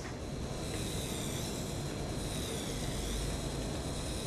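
Electric endodontic motor's contra-angle handpiece turning a 25/06 rotary file in the canal of a practice block: a quiet, steady high whine over a hiss.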